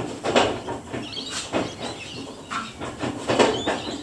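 A 1991 Suzuki Vitara's four-cylinder petrol engine being turned over slowly by hand through the raised rear wheel and the drivetrain in gear, with the ignition off, so it does not fire. About five uneven mechanical surges, the strongest near the start and near the end, as the engine draws fuel and air into its cylinders.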